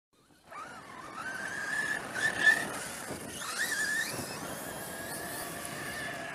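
Brushless electric 1/8-scale RC monster truck's motor whining, rising and falling with the throttle, over the hiss of its tyres churning loose gravel and dust. It starts about half a second in.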